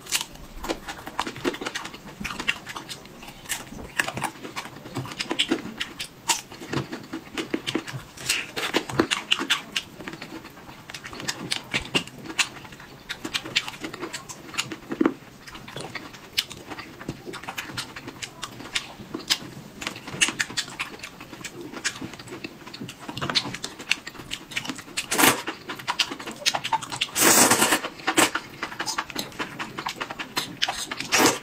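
Close-miked eating sounds: crisp bites and wet chewing of watermelon and enoki mushrooms in red sauce, full of sharp irregular clicks and crackles. One longer, louder rush of noise comes a few seconds before the end.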